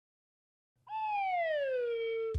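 A single high tone with overtones, starting about a second in and gliding slowly down in pitch, then levelling off.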